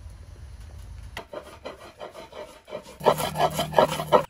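A round grinding stone rubbed back and forth over walnuts on a curved wooden Namak-yar plate, crushing them: repeated scraping strokes, a few per second, quieter at first and much louder in the last second.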